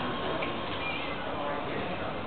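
A woman's voice through a hand microphone over bar room noise.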